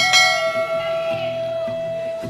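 A single bell chime, the notification-bell sound effect of a subscribe-button animation, struck once and ringing out with many overtones that fade over about a second and a half. Background music with a held melody note and bass notes runs under it.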